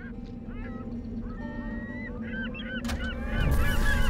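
Cartoon sound effects for a propeller flying machine: a steady droning hum over a low rumble, with many short squeaky, honk-like chirps. About three seconds in comes a sharp crash, followed by a louder rumbling boom as the machine crashes.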